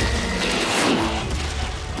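Cartoon sound effects of a giant robot on the move: a heavy low rumble with a swooping whoosh in the middle, mixed with the score.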